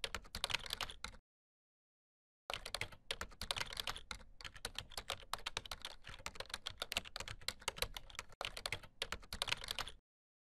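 Computer keyboard typing: quick runs of keystroke clicks. A short run stops about a second in, and after a pause of about a second a longer run starts, with one brief break near the end.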